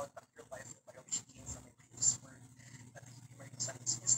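A man speaking, heard over a video-call connection, with a steady low hum beneath.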